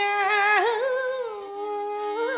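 Carnatic vocal music: a woman sings a held, ornamented melodic line whose pitch slides and wavers, over a steady drone.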